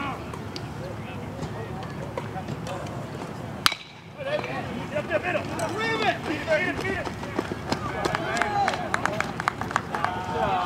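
A metal baseball bat hits the ball with a single sharp ping a little under four seconds in. Spectators and teammates then shout and cheer, their voices getting louder toward the end.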